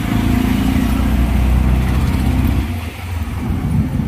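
Auto-rickshaw engine running steadily, heard from inside the cabin with road and traffic noise. Its low rumble drops off about three seconds in as the rickshaw slows to pull over.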